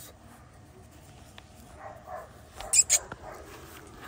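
Malinois puppy making faint little dog sounds while held in a hand, with a brief sharp, high-pitched sound a little under three seconds in.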